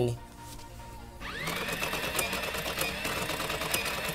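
Edited-in comedy sound effect of a rapid machine-like whirring clatter. It winds up in pitch about a second in, then runs steadily.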